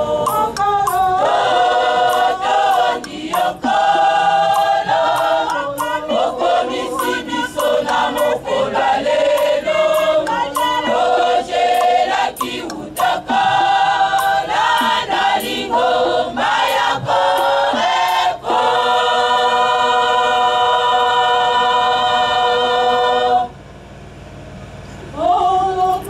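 Women's choir singing. The song ends on a long held chord that stops sharply shortly before the end.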